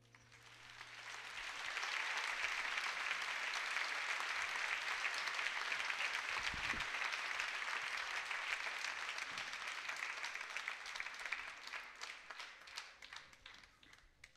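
Theatre audience applauding: the clapping builds over the first couple of seconds, holds steady, then thins into scattered separate claps near the end.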